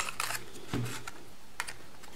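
Light clicks and rustles of hands handling a small cardstock card that holds hair clips. There is a sharp click right at the start and a few fainter ticks after it.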